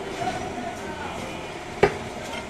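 Indistinct background voices over a steady hum of noise, with a single sharp knock near the end.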